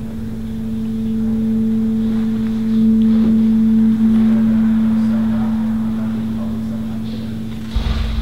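A single low note held as a steady drone at one pitch. It swells a little after about three seconds and then slowly fades, with a low thump near the end.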